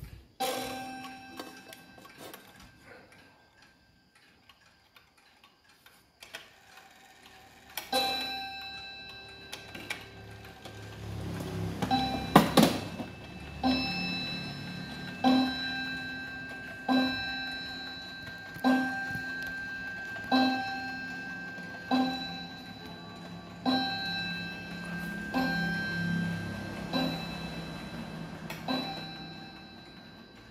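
Sato Clock 15-day pendulum wall clock striking the hour on its single nickel-silver gong with one hammer: a run of ringing strokes about every 1.7 seconds from about eight seconds in, one near the middle louder and sharper than the rest. Before the strike begins the pendulum ticks faintly.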